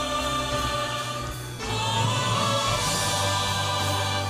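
Church choir singing sustained chords over instrumental accompaniment; about a second and a half in the sound dips briefly and a new, fuller chord begins.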